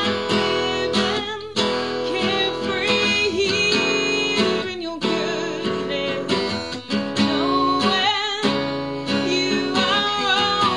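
A woman singing over a strummed acoustic guitar, her held notes wavering slightly.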